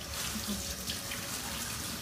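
Water running steadily from a tap, a constant hiss.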